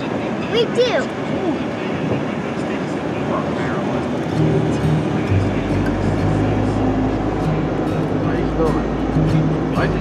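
Road and engine noise inside a car cruising at highway speed, with background music carrying a low bass line coming in about four to five seconds in.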